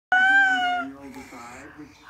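Baby's high-pitched squeal, held for under a second and falling slightly in pitch, followed by softer cooing.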